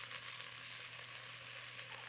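Pork ribs, garlic and ginger sizzling steadily in a little oil in a hot clay pot over high heat, browning. A low, even sizzle.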